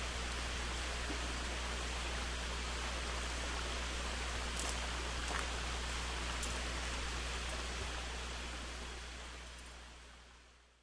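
Steady outdoor background hiss with a low hum beneath it and a few faint ticks, fading out over the last two seconds.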